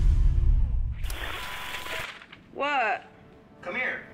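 The low, heavy end of an electronic music track dies away, then a digital glitch-static burst of hiss starts sharply about a second in and cuts off a second later. Near the end come two short vocal sounds from a woman, each rising and falling in pitch.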